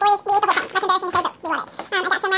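A woman's voice talking fast and high-pitched, her speech sped up.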